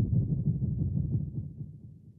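AI-generated sound-effect preset played on the Spire software synthesizer: a deep, rapidly pulsing rumble that fades away over the second half.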